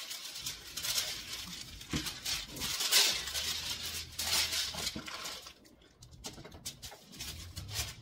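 Sheet of tissue paper rustling and crinkling as it is pulled out and spread across a desk for wrapping, in several bursts, with a short lull about five and a half seconds in.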